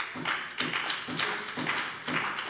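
Scattered applause in a parliamentary chamber: hands clapping in uneven pulses.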